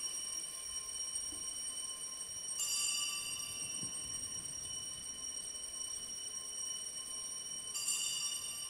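Altar bells (sanctus bells), a cluster of small high-pitched bells, ringing at the elevation of the chalice during the consecration. They are struck afresh about two and a half seconds in and again near the end, and ring on steadily in between.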